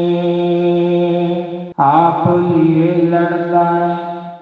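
A man's voice singing a Gurbani shabad in long, held notes. It breaks off briefly a little under two seconds in, then takes up a new note that starts fading out near the end.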